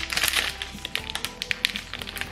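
Foil wrapper of a chocolate bar crinkling and crackling in quick, irregular clicks as hands peel it open, with background music.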